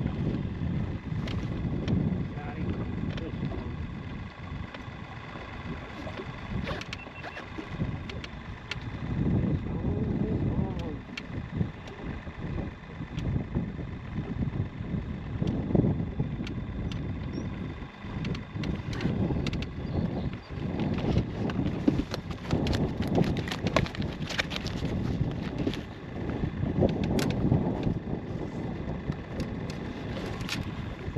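Wind rumbling and buffeting on the microphone in an open fishing boat, swelling and easing every few seconds, with scattered light clicks and knocks.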